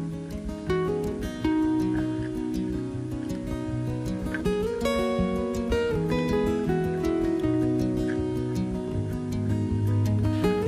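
Background music with a plucked acoustic guitar playing a melody of held notes.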